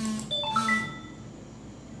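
A short electronic chime: about four bell-like notes in a quick rising run about half a second in, each ringing briefly, typical of a computer notification sound.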